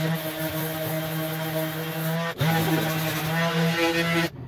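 DeWalt 20-volt cordless random orbital sander running against a rusty cast iron drain pipe, a steady motor hum with a brief break a little past halfway. It is sanding off thick paint and rust over a suspected crack.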